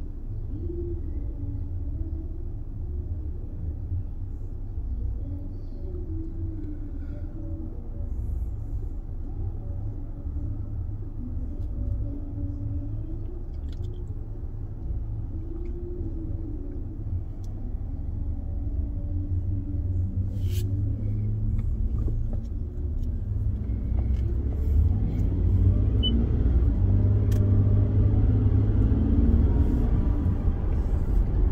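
Low, steady rumble of a car heard from inside its cabin while it sits in stopped traffic. It grows louder over the last few seconds as the car gets moving.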